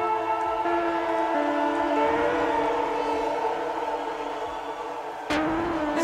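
Live electronic music in a breakdown: sustained synth chords, siren-like, with the bass dropped out. A little over five seconds in, a sudden heavy hit brings the bass back in.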